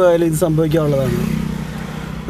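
A man speaks for about the first second. Then the engine and tyre noise of a passing motor vehicle runs steadily to the end.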